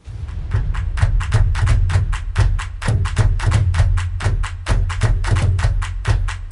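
Background music that starts suddenly: a fast, steady percussion beat over a heavy bass line.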